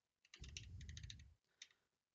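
Faint computer keyboard clicks, a few quick taps while stepping through frames, over a low rumble lasting about a second.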